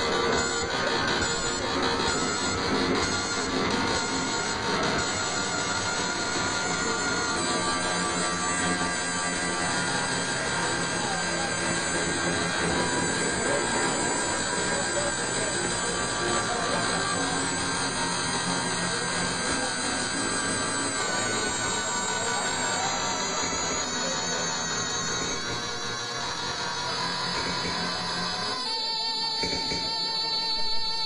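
Live electronic music played on a laptop and electronic instruments: a dense, steady texture of held tones with no clear beat. Near the end the low part drops out, leaving thinner high tones and one clear held note.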